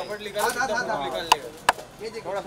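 Indistinct voices, then two sharp clicks about a third of a second apart, louder than anything else here.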